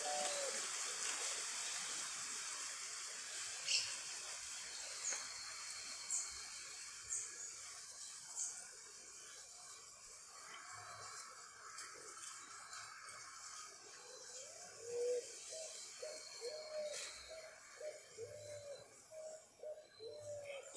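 Faint outdoor ambience with a few short, high bird chirps in the first half. In the second half come several low, curved bird calls.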